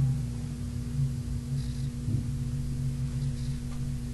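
A steady low electrical hum with a few overtones, unchanging throughout.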